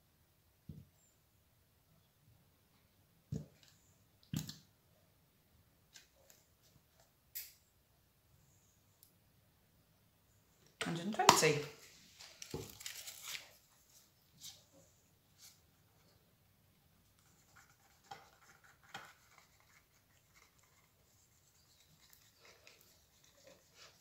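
Light clicks and knocks from a plastic paint bottle being squeezed over a plastic cup, with a louder rustling, scraping burst about eleven seconds in as the bottle is handled and put down.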